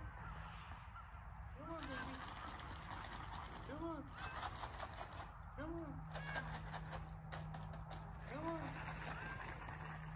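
A kitten meowing high up in a tree, faint: a short meow that rises and falls in pitch, repeated about every two seconds, six times.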